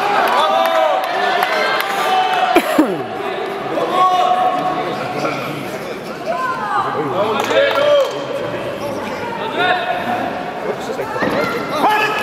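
Several people talking at once in a large sports hall, their voices overlapping, with a sharp thump about two and a half seconds in.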